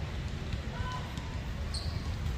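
Basketballs bouncing on an outdoor court some way off, heard as faint irregular thuds under a low rumble.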